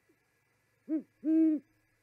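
Great horned owl hooting: a short hoot about a second in, followed at once by a longer, louder hoot.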